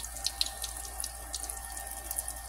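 Breaded eggplant slices frying in hot avocado oil: a steady sizzle with scattered crackles.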